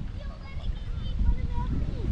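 Wind rumbling on the microphone, growing stronger near the end, with faint distant voices.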